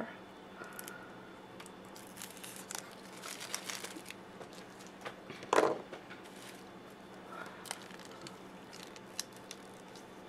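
Faint, intermittent crinkling and rustling of plastic crayon wrappers and crinkle-cut paper shred being handled, with one louder short rustle about halfway through.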